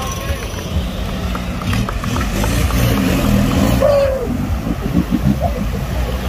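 Off-road 4x4's engine running hard under load as it drives down into a deep mud trench, getting louder in the middle, with spectators shouting over it.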